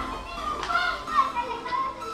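Children's voices, as of children playing, over background music.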